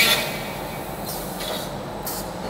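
Chain-driven TDC/TDF flange roll forming machine running, a steel strip passing through its forming rollers: a steady, even mechanical noise with a low hum.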